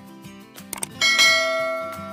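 A loud bell chime rings out about a second in and fades slowly, over steady intro music. Just before it come two quick clicks.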